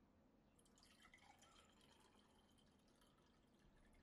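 Faint trickle of liquid, lasting about three seconds and stopping shortly before the end.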